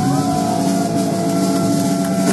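Live rock band holding a loud, sustained distorted chord that rings steadily, with a few cymbal hits over it.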